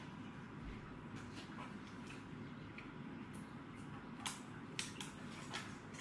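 Faint handling noise as plastic wrapping is taken off a new drone, with a few light clicks in the second half.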